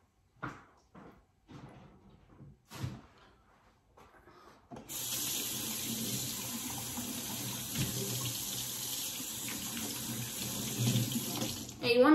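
A few light knocks, then a kitchen faucet turned on about five seconds in, water running steadily into the sink, shut off just before the end.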